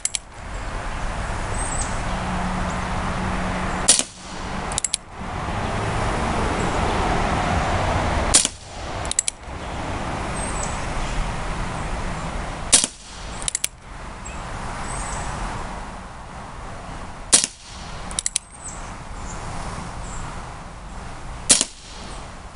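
CO2-powered Remington 1875 replica BB revolver firing five single shots about four seconds apart, each a sharp pop followed shortly by a fainter click or two, over a steady rushing background.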